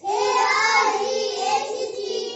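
Children's voices chanting a number aloud in a drawn-out sing-song, as in rote counting along a number chart.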